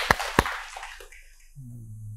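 Two sharp hand claps as laughter dies away in the first second, then a short, low hum from a man's voice near the end.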